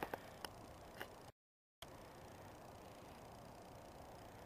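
Near silence: faint steady outdoor hiss, with a few small clicks in the first second and a half-second drop to total silence about a second and a half in.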